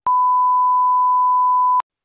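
A steady 1 kHz test-tone beep, the reference tone that accompanies television colour bars. It is held at one pitch for nearly two seconds and then cuts off abruptly.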